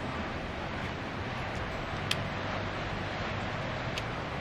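Steady wind noise on the microphone, with a single short click about two seconds in.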